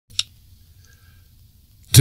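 A single sharp click shortly after the start, then faint low hum, until a voice begins speaking just before the end.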